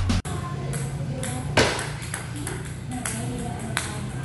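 Intro music cuts off just after the start. Then a table tennis ball clicks sharply against bat and table about every half second, with the loudest click near the middle.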